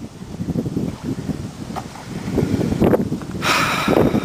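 Wind buffeting the microphone in rough, uneven gusts, with a louder hissing rush near the end.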